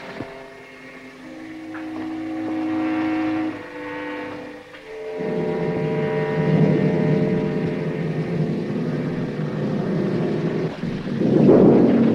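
Film-score music: soft held orchestral chords that change in steps, swelling to a fuller, louder chord about five seconds in, over a rough low rumble.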